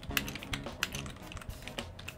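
Typing on a computer keyboard: a quick, steady run of key clicks, about five a second, as a word is typed. Soft background music plays underneath.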